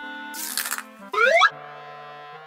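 Cartoon sound effects of an egg hatching: a short cracking burst about half a second in, then a quick rising boing, over soft held notes of background music.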